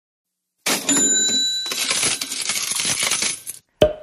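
Intro sound effect of metallic clinking and clattering, like coins, lasting about three seconds, with a ringing tone about a second in. It ends in a short sharp hit just before the speech begins.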